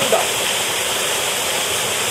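Steady, loud rush of a waterfall pouring into a canyon pool.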